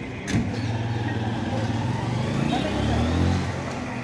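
A motor vehicle's engine going by close to the microphone, its note rising and loudest about three seconds in, under background voices. A single knock sounds just after the start.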